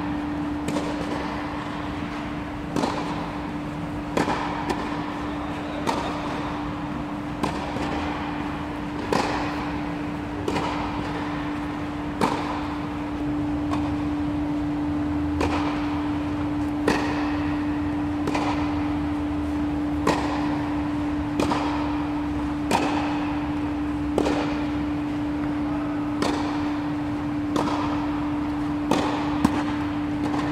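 Tennis balls struck back and forth with racquets in a rally on an indoor clay court: sharp pops about once a second, over a steady hum.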